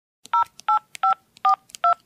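Touch-tone telephone keypad dialing: five short two-note beeps, about three a second, each pair of tones a little different as different digits are pressed, with faint clicks between them.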